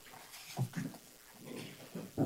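People settling back into meeting-room chairs: a few faint, brief shuffles and chair creaks.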